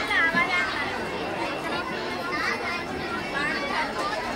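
Many children's voices chattering and talking over one another in a crowd, with one high voice standing out near the start.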